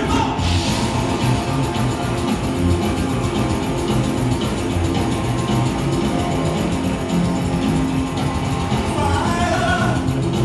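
Rockabilly band playing live on upright double bass, electric guitars and drums, with a lead voice starting to sing near the end.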